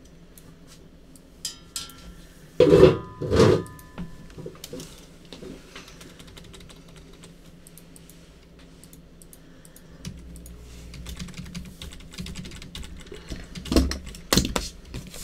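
Computer keyboard being typed on in short, scattered runs of clicks. There are two loud knocks about three seconds in and another near the end.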